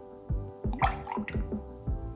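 Simple syrup being poured while it is measured with a jigger: a short trickle of liquid with a rising pitch about halfway through. Background music with a steady beat runs underneath.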